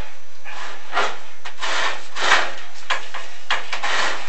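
Chimney inspection camera head and cable scraping against the ribbed walls of a corrugated oil flue liner as the camera moves down it: a run of rough rubbing strokes, the loudest a little past the middle, then a few short sharp clicks near the end.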